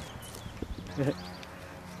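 Quiet outdoor background with a steady low hum, a few faint clicks a little after the start, and a brief low vocal sound about a second in.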